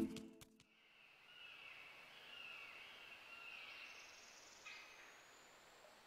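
Faint forest ambience with small birds chirping, after music cuts off about half a second in.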